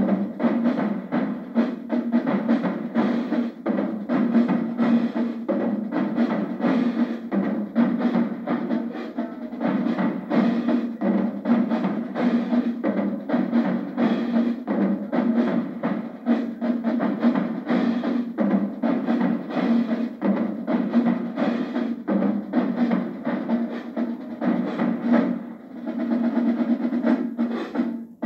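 Marching drumline of snare drums, marching bass drums and crash cymbals playing a fast, continuous cadence, with rapid snare strokes and cymbal crashes, thinning briefly near the end.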